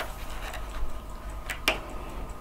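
Stiff pages of a large photo album being handled and turned, giving two short sharp clicks about a second and a half in over quiet room tone.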